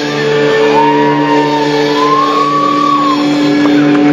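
Live rock band holding a long sustained chord with the drums stopped, and a long, high shouted vocal note that bends in pitch over it before dropping away about three seconds in.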